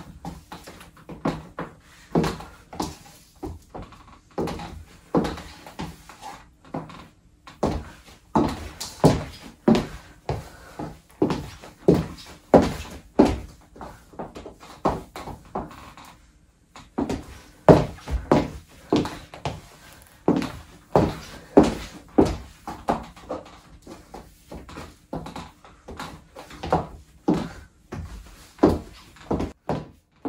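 High-heeled shoes stepping on a wooden floor: a steady run of sharp heel knocks, about one to two steps a second, with two short pauses.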